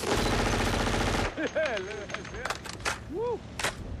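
Submachine gun firing one long automatic burst of a little over a second, followed by men's shouts and a few sharp cracks.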